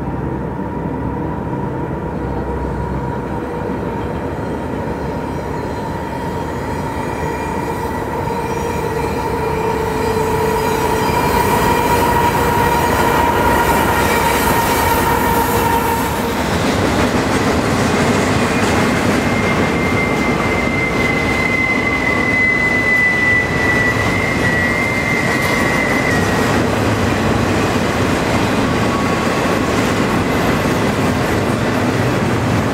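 Double-stack container freight train rolling past on a curve, with a steady rumble of wheels on rail and long, steady squeals from wheel flanges grinding on the curving track. It grows louder from about ten seconds in as the cars come close, and a higher squeal sounds from about eighteen to twenty-six seconds.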